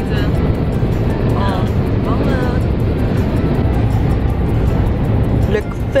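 Steady road and engine rumble heard inside a moving car's cabin, with music and brief bits of voice over it.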